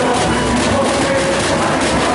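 Samba school bateria playing a driving samba groove: massed drums and percussion hitting in a dense, steady rhythm.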